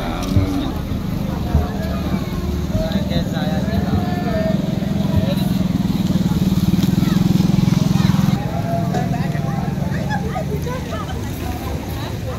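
Steady low hum of a small engine running, growing louder and then cutting off sharply about eight seconds in, under the chatter of many people's voices.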